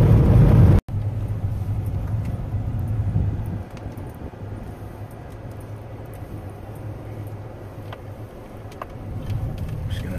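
Engine and road noise inside a car cabin while driving. After an abrupt cut about a second in, a steady low engine hum takes over, and it turns quieter about three and a half seconds in as the car slows to a crawl.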